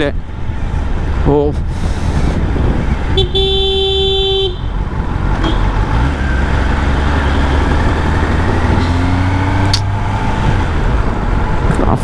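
Kawasaki Ninja ZX-10R's inline-four engine running low and steady at city-traffic speed, with a vehicle horn honking once for about a second a little over three seconds in.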